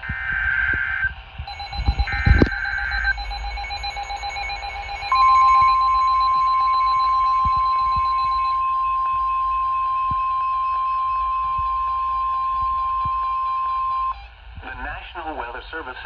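NOAA weather radio receiving a new warning: two roughly one-second bursts of digital SAME header screech, a pulsing beep, then the long steady single-pitch warning alarm tone for about nine seconds, the loudest sound here. A synthesized announcer's voice begins near the end.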